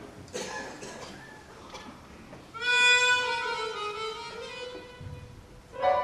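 Chromatic harmonica playing the slow opening of a tango: a few soft sounds, then one long held note of about three seconds that sags slightly in pitch, with the next note entering near the end.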